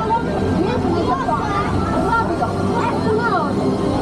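Voices talking over a steady low rumble from the moving ride vehicle.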